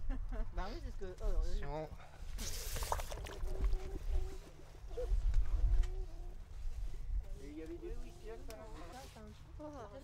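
Indistinct voices of people talking, over a steady low rumble. A brief hiss comes about two and a half seconds in.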